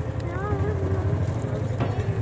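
John Deere Gator ride-on vehicle driving over bumpy ground: a steady low rumble with a faint, even motor hum.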